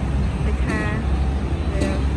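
A steady low rumble with a man's voice speaking briefly over it, about half a second in and again near the end.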